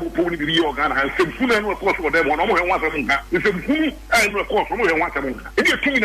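Speech: one voice talking without a break, the sound thin and cut off in the highs as over a radio or phone line.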